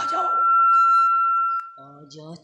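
Public-address microphone feedback: a single steady high-pitched squeal that swells, then cuts off about a second and a half in.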